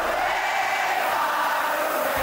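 Future Rave electronic dance music played live at a breakdown: the kick drum and bass have dropped out, leaving a steady wash of sustained voices and synth with no beat.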